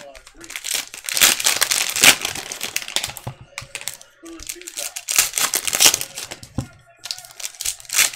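Plastic wrappers of trading-card packs crinkling as the packs are ripped open by hand and the cards pulled out. It comes in three stretches of crackling with short pauses between.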